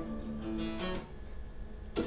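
Solo acoustic guitar: a few ringing picked notes changing in pitch, then a sharp stroke across the strings near the end.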